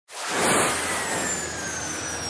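Cartoon spaceship whoosh sound effect: a rushing jet-like noise that swells quickly to its loudest about half a second in, with a thin high whistle slowly falling in pitch.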